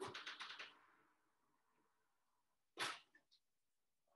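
Near silence in a small room, with a few faint soft sounds in the first second and one short, sharp noisy burst about three seconds in.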